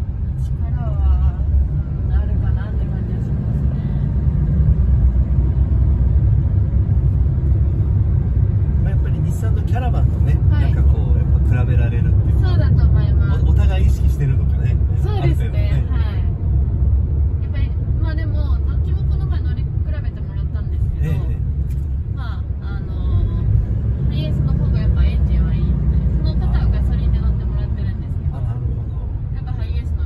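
Cabin noise inside a moving Toyota HiAce van: a steady low rumble of engine and road while it drives, with people talking quietly over it.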